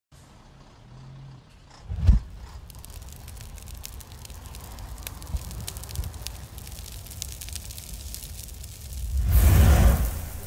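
City transit bus running, with a steady low engine rumble and faint scattered clicks. There is a sharp thud about two seconds in and a loud rushing swell in the last second.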